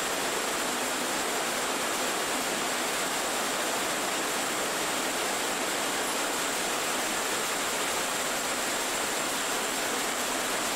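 Steady, even hiss with a faint high-pitched whine running through it, the background noise of an old film's soundtrack, with no machine rhythm in it.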